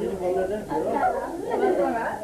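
People talking over one another: overlapping chatter of several voices.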